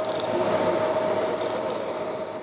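Steady mechanical rushing noise with one constant mid-pitched hum through it, easing down in level near the end as it begins to fade out.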